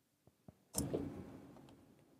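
Computer keyboard: two light key clicks, then a louder key strike about three quarters of a second in that fades over about half a second, the search being sent.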